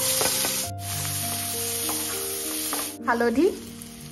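Sliced onions hitting hot oil in a stainless steel kadhai, sizzling loudly the moment they land and being stirred with a spatula; the sizzle dies down after about three seconds.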